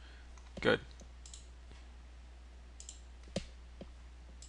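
A few short, sharp clicks of a computer mouse, the loudest a little after three seconds in, over a steady low hum.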